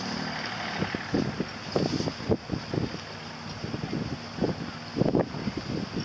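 Wind buffeting the microphone in irregular gusts, loudest about five seconds in, over a steady low hum from the outboard motor of an inflatable rescue boat running out on the water.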